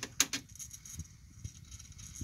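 Pioneer CT-W770 cassette deck's tape transport during a music search: a quick cluster of mechanical clicks just after the start, then the faint steady running of the tape winding, with a few light ticks.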